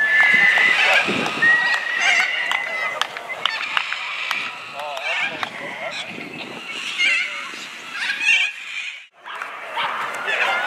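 Sideline crowd at a junior rugby league match talking and calling out. A steady high tone is held twice in the first three seconds, and the sound cuts out briefly just after nine seconds.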